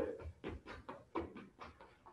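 Quick, light footfalls of sneakers landing on a hard floor during fast agility-ladder footwork, about four steps a second.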